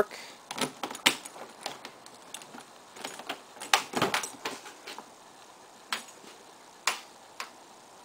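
Keys jangling and a key clicking in the driver's door lock of a Chevrolet Colorado pickup: a run of small sharp clicks. Then the door handle and latch clack as the door is pulled open.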